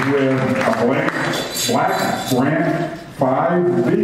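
Speech: a man talking in a room.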